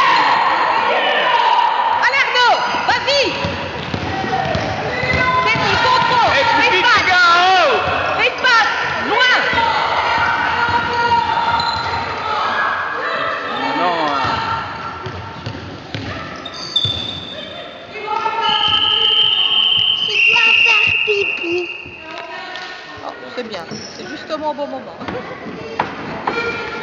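Youth basketball game in a gym hall: a basketball bouncing on the floor, sneakers squeaking, and children and spectators calling out. About two-thirds of the way through comes a long, high whistle in two parts.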